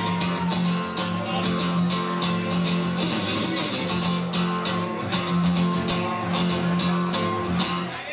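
Acoustic guitar with a soundhole pickup strummed in a steady repeated rhythm, stopping right at the end.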